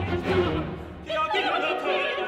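Operatic soprano and tenor voices singing over a chamber orchestra's strings and bass. After a brief dip about a second in, a voice line with wide vibrato comes in strongly.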